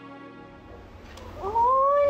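Soft background music fading out, then about one and a half seconds in a woman's high, drawn-out crying voice rises and holds, loud.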